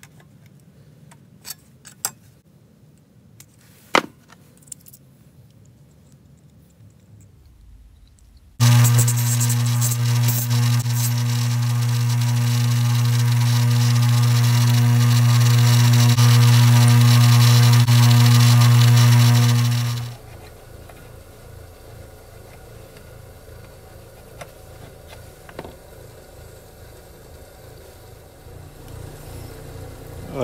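Tin snips snipping thin 0.015-inch steel shim stock in a few sharp clicks, then a bench grinder switched on about nine seconds in, running with a loud steady hum and a grinding hiss as a small steel shim disc is held to the wheel, until it is switched off after about eleven seconds.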